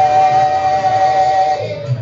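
Live gospel worship song with band accompaniment: one long note is held at the end of a sung line and dies away about a second and a half in.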